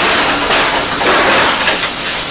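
Pan of vegetables sizzling loudly in butter and stock, the hiss growing brighter near the end.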